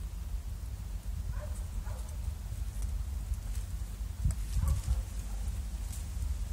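Sneakers shifting and scuffing on a fallen log's bark, with a few knocks close together about four seconds in, over a steady low rumble.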